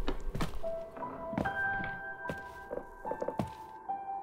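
Dark, suspenseful trailer music of held tones that shift every second or so, cut through by heavy, irregular thuds.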